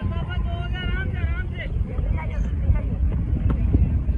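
Wind buffeting the microphone in a steady low rumble, with faint calls from players' voices in the distance.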